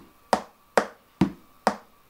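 Metronome clicking a steady beat, a little over two clicks a second, counting out the beats of a bar.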